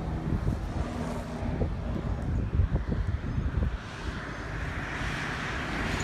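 Gusty wind buffeting a phone microphone over road traffic noise, with a vehicle approaching, its tyre noise rising over the last two seconds.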